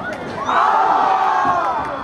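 Football stadium crowd shouting together as a pass sails toward the end zone: a loud burst of many voices about half a second in, lasting just over a second before dying away.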